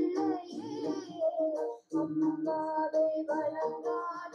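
A child singing a classic Indian film song, heard through a Zoom call, in phrases with a short breath break about two seconds in.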